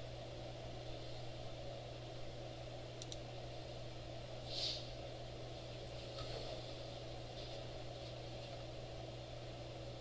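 Quiet room tone with a steady low electrical hum, a few faint clicks about three seconds in and a brief soft hiss near the middle.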